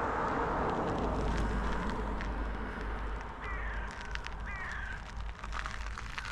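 A bird calls twice, about three and a half and four and a half seconds in, each a short call falling in pitch, over a steady hiss of wind or lapping water. A few crunching footsteps on the shore come near the end.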